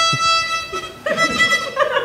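A beginner bowing a violin: a steady high note on the open E string fades out about half a second in. About a second in comes a second, wavering stroke, and laughter begins near the end.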